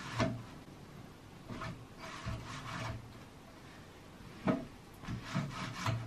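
A wall-hung canvas picture on its wooden frame rubbing and scraping against the wall as it is shifted by hand, in several short strokes with pauses between.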